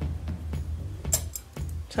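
Background music with a steady low beat, and a short sharp click about a second in.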